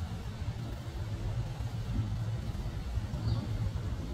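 Steady low rumble under a faint hiss: outdoor ambience.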